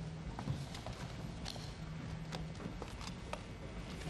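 Scattered light clicks and knocks at irregular intervals, desk and microphone handling noise in a large hall, over a faint low hum that comes and goes.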